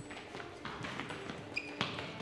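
Running footsteps on a hard concrete floor, a series of quick scattered steps with a sharper knock near the end.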